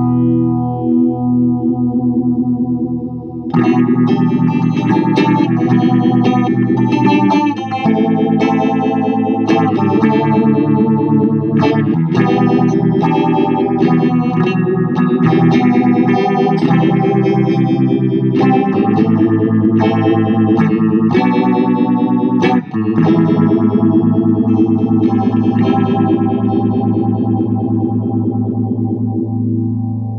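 Distorted electric guitar played through an Electra 875 Phase Shifter, its sweep moving through the tone. A held chord rings at first; about three and a half seconds in, a driving riff of fast-picked chords starts and runs until it dies away near the end.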